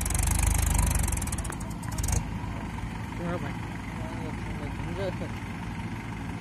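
Mahindra 575 tractor's diesel engine running steadily, with a loud fluttering rush over it for the first two seconds that cuts off sharply. Faint voices are heard in the middle.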